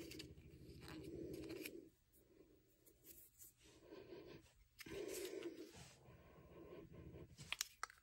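Near silence with faint handling of small clear plastic bead containers: a few light clicks and scrapes, scattered through the quiet.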